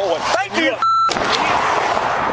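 A censor bleep: a short, steady, high-pitched tone lasting about a quarter of a second, about one second in, blanking out a swear word in a man's speech. Steady outdoor rushing noise follows.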